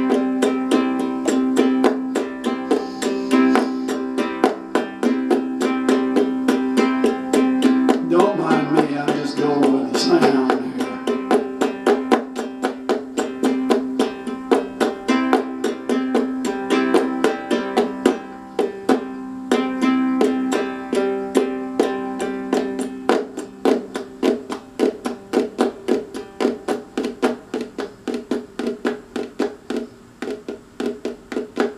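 Concert ukulele strummed in a fast, steady rhythm, its chords ringing. Toward the end the strokes become more clipped and percussive.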